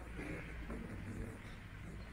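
Ambience of a large indoor hall: a low steady rumble with faint, indistinct voices.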